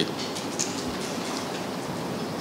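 Steady room noise in a press room: a constant hiss with no voice.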